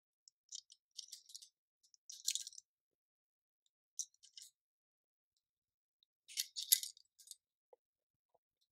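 Light clicks and scrapes of a piece of bassoon cane and the metal cane clamps being handled and fitted onto the cane barrel of a Herzberg double-barrel reed profiler, coming in four short clusters, the loudest near the end.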